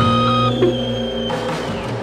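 Glam rock band's held closing chord ringing out and slowly fading, with sustained electric guitar tones dying away one by one.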